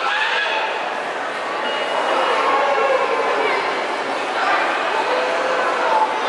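Busy hubbub of many children's voices, chattering and calling out in a large indoor play area, with an occasional high squeal.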